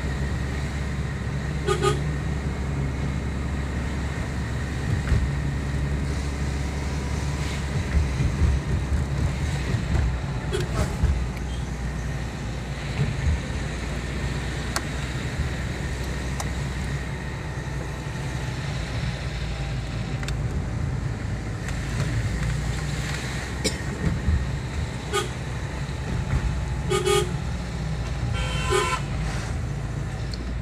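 Vehicle driving down a winding mountain road, a steady rumble of engine, tyres and wind, with short horn toots sounding several times: once about two seconds in, again around the middle, and a cluster of toots near the end.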